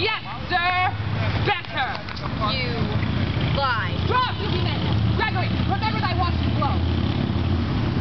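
Indistinct voices of people close by, heard in short snatches over a low, steady rumble that grows steadier in the second half.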